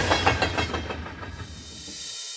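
Train rumble and wheel clatter fading steadily away, a train sound effect at the tail of a logo sting.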